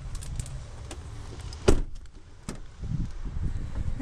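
A few light clicks, then a sharp knock a little before halfway and a second knock shortly after, with some softer thuds, over a low rumble.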